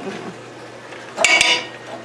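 Metal spoon knocking against a metal pressure-canner pot: one short ringing clink a little over a second in.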